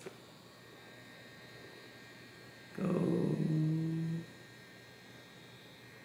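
A person humming one low, steady note for about a second and a half, midway through; otherwise quiet room tone.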